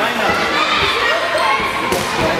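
A handball bouncing on a sports-hall floor in short knocks, amid overlapping children's voices calling across the court, with the echo of a large hall.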